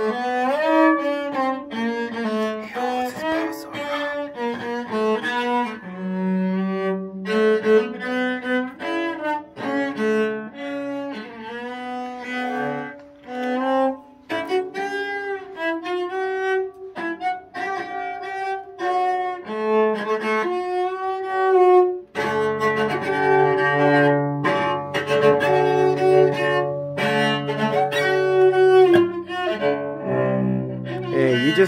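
A child playing a cello with the bow: a slow melody of sustained single notes, each changing to the next pitch. In the last third the notes move lower and fuller, with a deep note held underneath.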